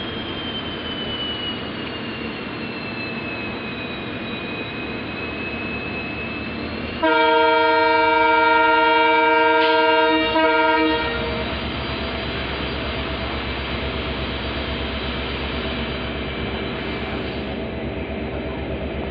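Diesel locomotive horn sounding its departure signal, one long blast of several steady tones together, about three and a half seconds, with a brief break near its end and a short tail, heard from a coach window down the train. Steady train rumble runs underneath and grows louder after the horn.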